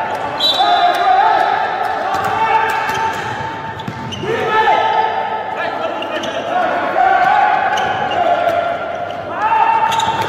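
Indoor handball game: the ball bouncing and slapping on the court, with players' voices calling out, echoing in a large sports hall.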